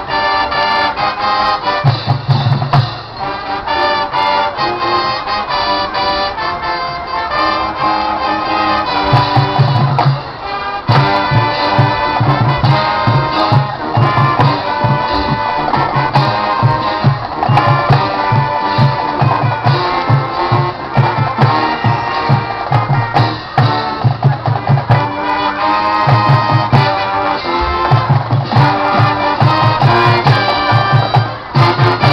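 High school marching band playing live: brass over drums, with a steady pulsing low beat from about a third of the way in.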